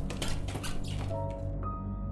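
Dark, droning horror film score with a rapid, irregular flurry of dry clicks that stops about one and a half seconds in, as sustained chime-like tones come in.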